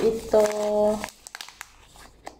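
Clear plastic packaging bag crinkling as it is handled, with a few light clicks in the second half. A brief held voice sound, a drawn-out vowel, is louder in the first half.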